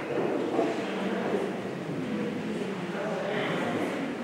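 Indistinct murmur of people in a large, echoing church, a steady low hubbub of voices with no clear words.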